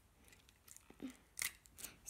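A few faint rustles and clicks of hands handling a small toy and a strip of tape close to the microphone, short crackles about a second in and again near the end.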